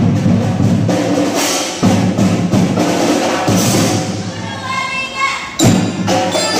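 Children's drum band playing a fast percussion rhythm with drums and sharp wood-block-like clicks. Near the end a few held notes sound, the band breaks off for a moment, then comes in loudly again.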